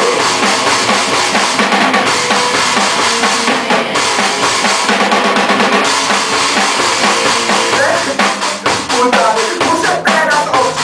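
A rock band playing, with drum kit, electric guitar and bass in a mostly instrumental passage between sung lines and a rapid run of drum strokes near the end. The recording sounds thin, with little low end.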